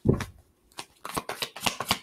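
A deck of tarot cards being shuffled by hand: a dull thump at the start, then a quick run of soft card flicks and slaps from about a second in.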